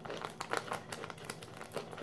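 A foil pouch crinkling as it is folded and handled: a run of quick, irregular crackles.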